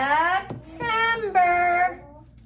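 Young children and a woman chanting words together in a sing-song voice, in two drawn-out phrases with a short break between.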